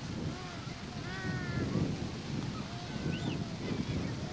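Wind buffeting the camcorder microphone: a steady low rumble. A few faint, high, wavering calls sound over it.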